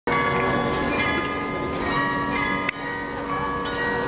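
The Munich Rathaus-Glockenspiel's carillon bells playing a tune: notes struck one after another, each ringing on and overlapping the last. A brief sharp click sounds about two-thirds of the way through.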